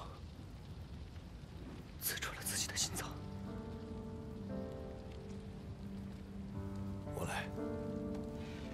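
Soft background music of long held notes comes in about three seconds in, over a steady hiss of ambience. Brief hushed, breathy voice sounds come shortly before the music and again near the end.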